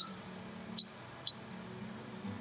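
Three light, sharp clinks as painting tools are handled around a metal watercolor tin and plastic mixing palette: one right at the start, then two about half a second apart near the middle, over a faint steady hum.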